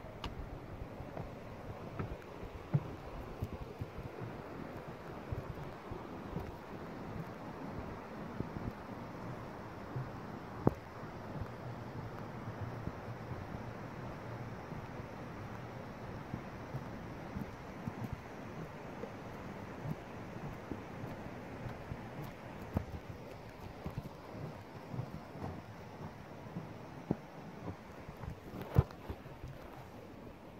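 Steady rush of a rocky mountain river flowing below a footbridge, with a few scattered sharp knocks on top.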